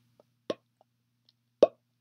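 Two short lip smacks or mouth clicks, about a second apart, the second louder, over a faint steady low hum.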